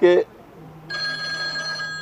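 A steady electronic ringing tone, made of several held pitches, starts about a second in and holds unchanged, after a man's last spoken word.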